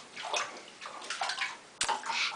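Bath water sloshing as a child shifts about in the tub, with a sharp click near the end.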